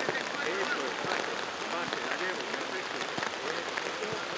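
Steady rain falling on a football pitch and stadium stands, with distant shouting voices and a couple of sharp knocks of footballs being struck.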